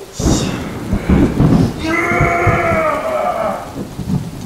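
Thunder rumbling over steady rain. From about two seconds in, a drawn-out wavering pitched sound is heard over it for about a second and a half.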